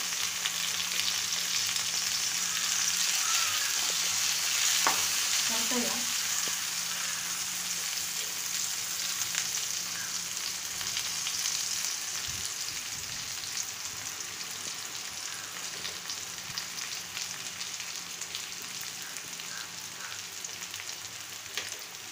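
Chopped onion, cumin seeds and fresh curry leaves sizzling in hot oil in a frying pan, a steady sizzle that is strongest in the first few seconds and slowly dies down.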